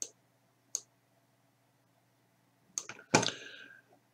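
Computer mouse clicking: a single click at the start, another under a second later, and a quick run of clicks near three seconds in. These are followed by a louder, brief noise of under a second.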